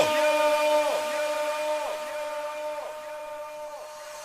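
A held electronic tone, a synth or heavily processed voice, cut off with a downward pitch drop and then repeated by an echo effect about once a second. Each repeat slides down in pitch and is quieter than the last, so the whole sound fades out, as in a DJ drop's echo tail.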